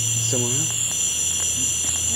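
Night insects, likely crickets, chirping in a steady high-pitched chorus, one trill cutting in and out. A low hum underneath drops in pitch about a second in.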